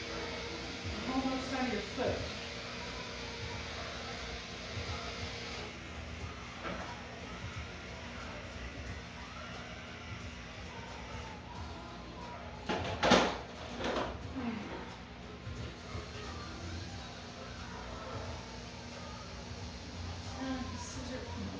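Electric dog clippers running with a steady hum while a dog's hind leg is shaved, with a short loud rustling knock about thirteen seconds in.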